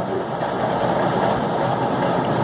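A steady mechanical hum with a rushing, noisy quality and no clear rhythm or pitch.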